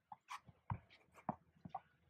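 Tennis ball being bumped gently off a racket's strings against a practice wall, a few faint taps roughly half a second apart.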